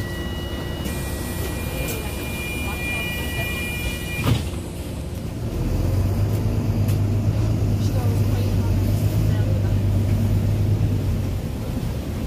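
Inside a double-decker bus: a steady high-pitched electronic tone sounds for about four seconds and stops with a sharp thump, then the diesel engine's low hum grows louder and steadier as the bus pulls away from the stop.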